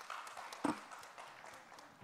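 Fairly faint audience applause, an even patter of clapping, with one brief louder sound about two-thirds of a second in.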